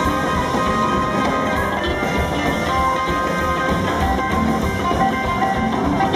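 Live rockabilly band playing an instrumental break of a song, guitar to the fore over the rhythm section, with no singing.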